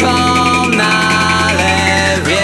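Alternative rock music in an instrumental passage: held pitched notes over a steady low bass. The notes slide down in pitch near the end.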